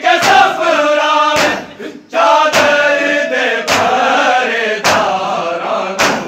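Group of men chanting a noha in unison, punctuated by matam: the crowd striking their chests with their hands together, five strikes a little over a second apart.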